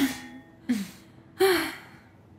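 Two short breathy vocal sounds, like gasps or sighs: a falling one about two-thirds of a second in and another near 1.4 s that fades away. At the start, a faint ring of stemmed glasses touched together in a toast.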